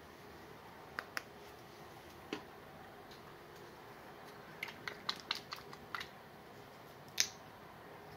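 Handling noise from a phone camera being set into its mount: a few scattered small clicks, then a quick run of clicks and taps in the middle, and one sharper click near the end.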